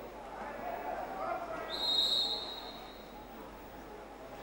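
Indoor pool arena ambience with faint distant voices. About two seconds in there is a single high, steady referee's whistle blast lasting just under a second, stopping play.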